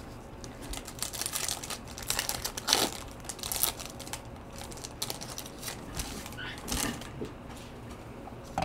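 Foil trading-card pack wrapper crinkling in scattered short crackles as the pack is handled and torn open.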